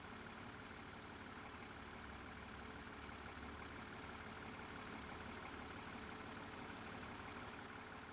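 Faint, steady engine hum, like a petrol engine idling, with a faint steady tone over a low rumble.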